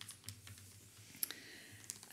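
Faint room tone in a hall: a steady low hum with a few scattered soft clicks, the sharpest a little past the middle.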